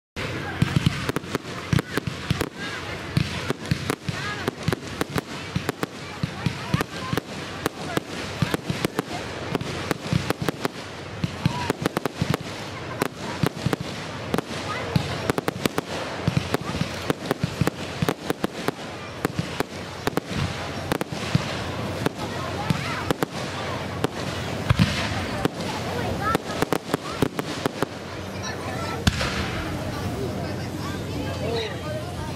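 Fireworks display: a dense barrage of sharp bangs and crackles, several a second, with no pause.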